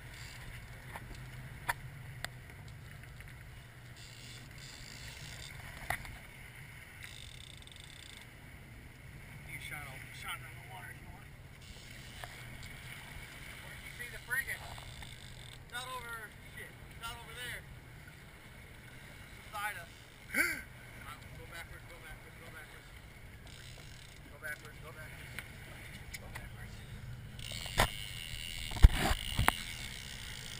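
A boat's engine runs steadily under the rush of water along the hull as the boat turns to chase a hooked fish, with muffled voices now and then. Near the end come a few loud knocks and splashes of water against the side.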